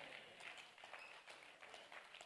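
Near silence: faint steady background hiss and room noise, with a few faint ticks.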